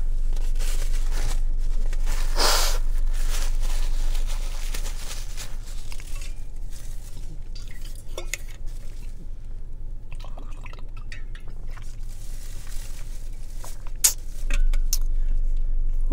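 Light clicks, clinks and rustles of a takeout bento container and utensils being handled after a meal, with a louder rustle a couple of seconds in and a few sharp clicks near the end, over a steady low hum.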